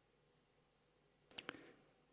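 Near silence, broken about a second and a half in by three faint, quick clicks.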